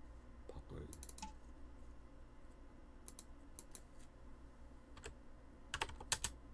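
Scattered clicks of a computer mouse and keyboard keys: a couple about a second in, a few single ones after, and a quicker, louder run of key presses near the end, over a faint steady hum.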